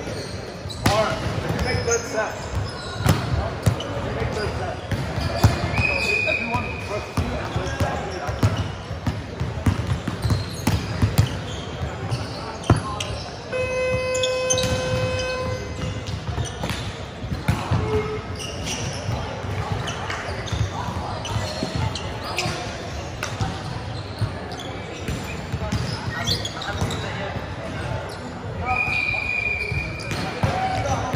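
Volleyballs being hit and bouncing on a hardwood sports-hall floor during a warm-up, a steady run of sharp slaps and thuds echoing in the large hall, with voices around. A steady held tone of about two seconds sounds midway through.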